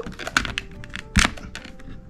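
Fingers working the top vent of an Alpinestars R10 carbon-fibre helmet: a run of small clicks and taps, then one sharper click a little past the middle.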